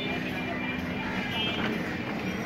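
Street ambience: a steady hum of traffic with faint voices in the background.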